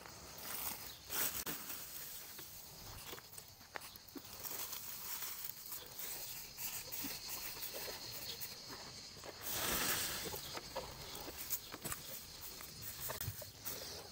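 Faint rustling and crackling of dry pine needles being scattered by hand as mulch, with footsteps on dry ground and a louder rustle about ten seconds in.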